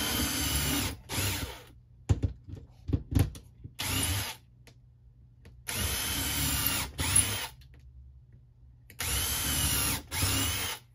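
Cordless drill boring pilot holes into a wood-paneled wall, run in about six short bursts. Each burst has a motor whine that climbs and then drops away when the trigger is released, with a few knocks and clicks of handling between bursts.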